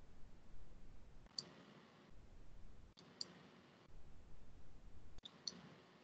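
Several faint clicks over a low background noise that drops in and out on a video-call audio line, while a participant's microphone is being sorted out.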